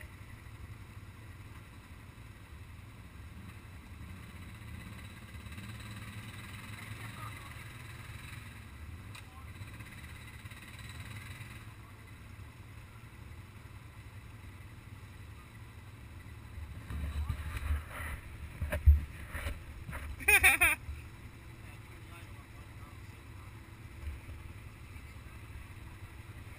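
ATV engines idling at low level, with a louder stretch of engine pulses a little past the middle. A brief voice cuts in shortly after.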